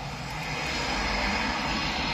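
Jet engine noise from a taxiing Eurofighter Typhoon: a steady rushing sound that grows slowly louder.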